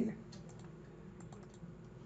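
A few faint computer mouse clicks as digits are clicked into a calculator emulator on screen.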